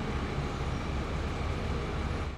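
City transit bus engine running at a stop, a steady low rumble with street noise around it.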